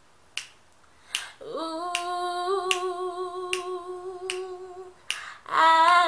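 Finger snaps keeping a steady beat, a little under a second apart, under a woman's unaccompanied singing voice: a long held, wordless note from about a second and a half in to about five seconds, then a louder note starting near the end.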